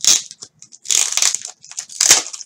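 Thin clear plastic bag around a trading card in a plastic holder crinkling as hands handle and unwrap it, in several short, irregular bursts.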